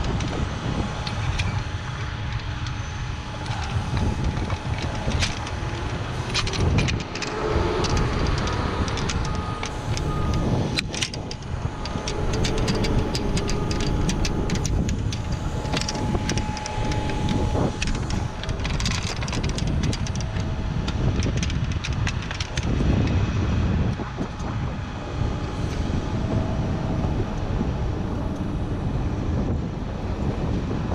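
Wind buffeting a head-mounted camera's microphone up in a utility bucket, over a steady low drone. Scattered short clicks and knocks come from a hot stick being worked against line hardware.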